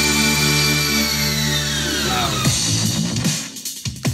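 Electronic demo music playing from a House of Marley display speaker: held synth chords with a long falling pitch sweep, then the track changes to a choppier beat about two and a half seconds in and briefly drops away near the end.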